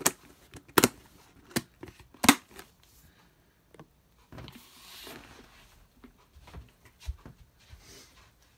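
Plastic lid being pressed onto a clear plastic deli tub: four sharp clicks a little under a second apart, the last the loudest. A soft rustle and a few light taps follow.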